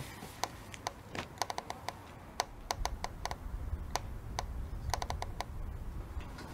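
A run of sharp, irregular clicks and taps, sometimes in quick clusters, with a low rumble coming in about halfway through.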